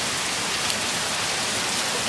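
Heavy rain falling steadily, a constant even hiss of rain on the ground.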